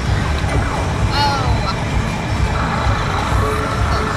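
Arcade din: a steady low rumble of machines and crowd, with electronic game sounds that glide in pitch a little over a second in and a held electronic tone through the second half.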